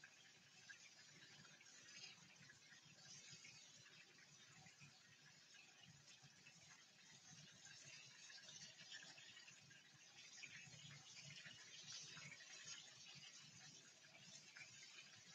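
Near silence, with a faint hiss of turon frying in oil in a covered pan and a few light clicks in the second half.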